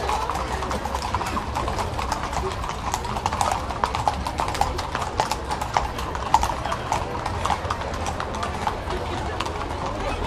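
Many horses' hooves clip-clopping irregularly on a paved street as a group of riders walks past close by, with voices of people around.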